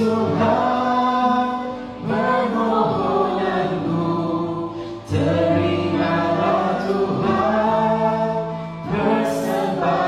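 A woman singing a slow Indonesian-language worship song into a handheld microphone over a backing track, in phrases a few seconds long with short breaks between them.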